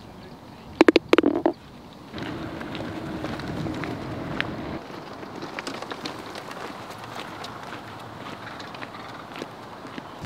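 A golf ball rattling into the hole's cup after a short putt: a quick clatter of sharp clicks with a brief ring about a second in. It is followed by a steady, fainter hiss.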